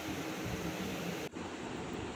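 Steady background hiss of room noise picked up by the recording microphone, with a brief dropout a little over a second in, after which the hiss is duller.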